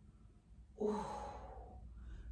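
A woman's breathy sighing "ooh" about a second in, falling in pitch and trailing off into breath: a sound of pleasure as she settles into a side-lying quadriceps stretch.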